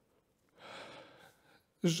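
A man's short in-breath close to the microphone about half a second in, in a pause between sentences, followed near the end by the start of his next word.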